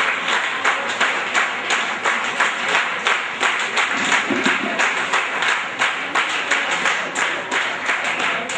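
An audience applauding, with many hands clapping steadily and densely.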